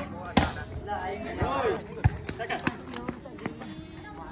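A volleyball being struck by players' hands and forearms: two sharp hits about a second and a half apart, with lighter ball contacts between them.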